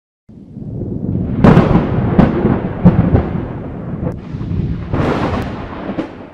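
Cinematic logo-intro sound design: a deep rumble with four heavy booming hits between about one and a half and three seconds in, then a swelling rush around five seconds in that fades away.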